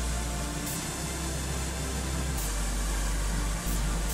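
Electronic dance music with a strong, steady bass line playing over loudspeakers.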